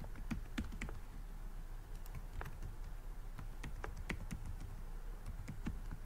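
Typing on a computer keyboard: faint, irregular key clicks, a few each second.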